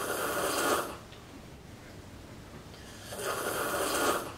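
A girl's two long, noisy breaths, each about a second long and about three seconds apart: heavy, drawn-out breathing like sleepy snoring or sighing.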